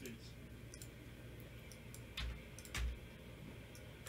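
Scattered computer mouse and keyboard clicks, with two louder clicks a little past the middle, about half a second apart.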